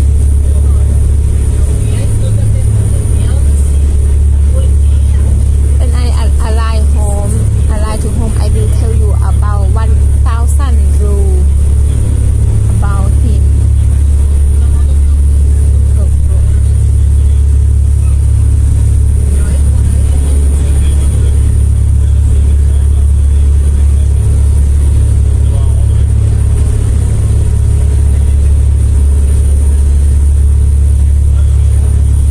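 Steady low engine drone of a large passenger vehicle heard from on board, with a faint steady high whine above it. Faint voices come in for a few seconds partway through.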